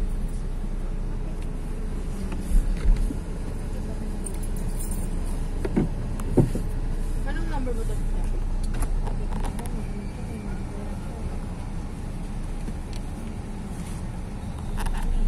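Inside a stationary car's cabin: a steady low vehicle rumble, with a few short knocks about two and a half and six seconds in, and faint voices.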